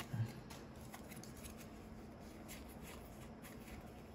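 Faint sliding and flicking of a small stack of Yu-Gi-Oh trading cards being sorted through by hand, after a brief low sound at the very start.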